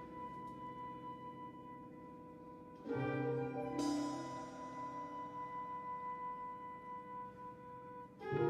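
Contemporary classical chamber ensemble of strings, piano, winds, brass and percussion playing a slow passage: a single high note held throughout, with a louder chord entering about three seconds in and a bright attack about a second after that, the notes then sustained.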